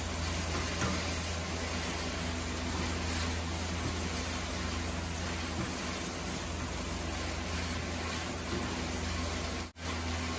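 Chicken strips frying and sizzling steadily in a nonstick pan over a steady low hum, with occasional light scrapes and taps of a wooden spatula as they are stirred. The sound cuts out briefly near the end.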